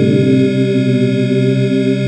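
Dungeon synth music: layered synthesizer tones held as a steady chord, with the lower notes shifting slowly.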